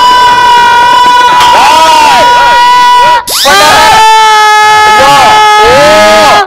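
A woman belting a song at full volume in long, strained held notes: one note held about three seconds, a brief break, then a second, slightly lower note held to the end. The singing is deliberately awful, played for laughs.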